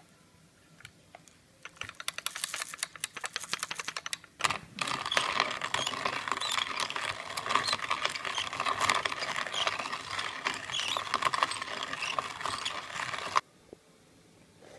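Hand-cranked box coffee grinder grinding roasted coffee beans. First comes a run of sharp clicks, then from about four and a half seconds a dense, continuous crunching grind that stops abruptly near the end.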